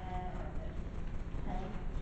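Brief, faint voices of people speaking away from the microphone, over a steady low hum of room noise.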